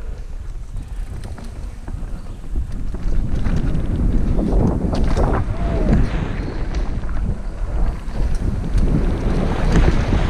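Wind buffeting the microphone over the rumble and rattle of a mountain bike rolling fast down a dirt trail, louder from about three seconds in.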